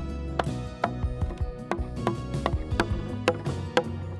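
Background music with a steady musical bed, over a series of irregular sharp knocks from mallets striking chisels, cutting joints in timber beams.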